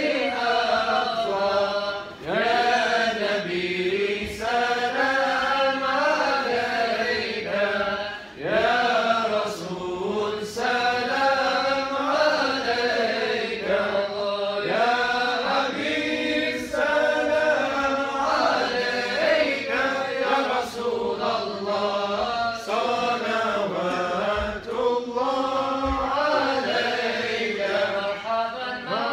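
A group of men chanting a devotional mawlid text together from books, voices in unison, the melody rising and falling in long sweeping lines.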